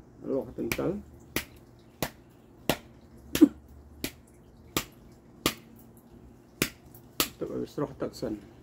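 Crisp, sharp snaps of fresh greens' stems being broken off by hand, coming irregularly about once every half second to second, one a little louder than the rest about three and a half seconds in.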